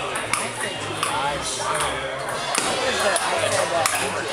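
Table tennis ball being struck in a rally: a few sharp clicks spaced a second or more apart, over background chatter of voices.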